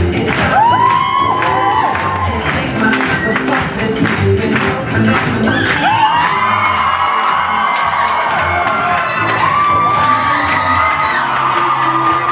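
Loud dance music with a steady beat, with a crowd cheering and whooping over it.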